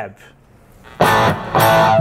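Electric guitar played through a Fractal Audio Axe-Fx III modeler on a Legend 102 amp model: two strummed chords, the first about a second in and the second half a second later, left to ring.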